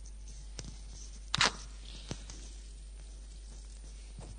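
A clip-on lapel microphone being handled and reattached after it fell off: faint small clicks and one loud knock on the microphone about a second and a half in.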